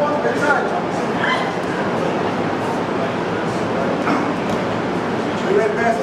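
A crowd of spectators talking and calling out in a large hall, with short high-pitched shouts over steady background noise.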